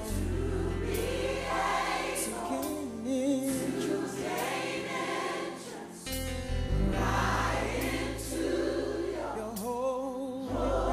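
Choir singing a gospel worship song over instrumental backing with a sustained bass; the bass drops away about four seconds in and returns around six seconds.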